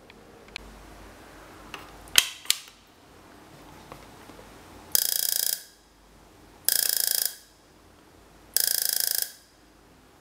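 A homemade EMP device, a converted taser whose spark gap sits in series with a copper pulse coil, fired in three short bursts of rapid buzzing sparks, each about half a second long. Before the bursts come a few sharp clicks from the device being handled.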